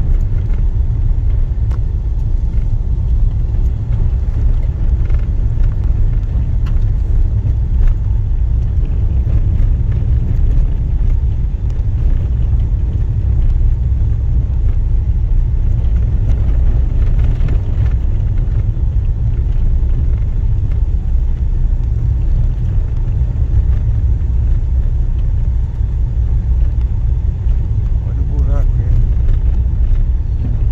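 A car driving along an unpaved dirt road: a steady low rumble of engine and tyres on the dirt surface.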